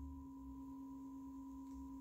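Faint room tone: a steady hum made of two pure tones, one low and one higher, over a low rumble.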